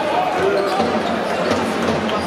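Basketball dribbled on a hardwood court, a few bounces heard through the steady chatter of voices in the arena.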